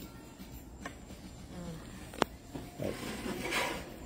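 Spatula scraping and tapping on a tawa as a large roti is turned over on it, with one sharp click a little over two seconds in.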